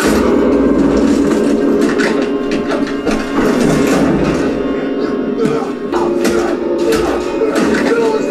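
Loud dramatic score from a TV drama's fight scene, with a low rumble under it and repeated sharp hits and thuds throughout.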